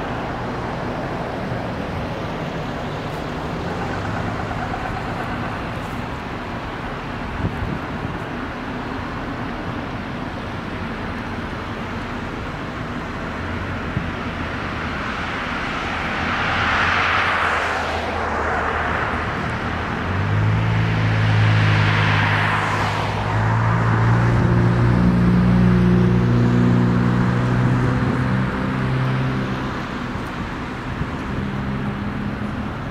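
Road traffic on a street: cars driving past with tyre noise, two of them going by close, one about halfway through and another a few seconds later. From about two-thirds in, a lower, steady engine hum joins and runs until near the end.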